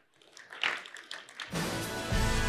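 A few scattered audience claps, then theme music for the outro comes in about a second and a half in and holds steady.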